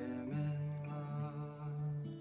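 A chord strummed on an acoustic guitar rings on under a man's long held sung note, which wavers with vibrato.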